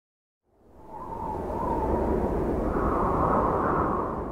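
A rushing, rumbling whoosh sound effect for a TV network logo ident swells up from silence about half a second in, holds loud, and starts to fade near the end.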